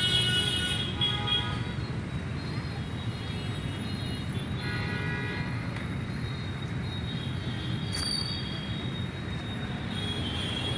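Steady outdoor street noise from road traffic, a continuous low rumble. A few brief higher tones sound over it near the start and about halfway through.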